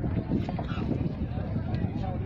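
Wind buffeting the microphone in an uneven low rumble, with faint voices of people talking nearby.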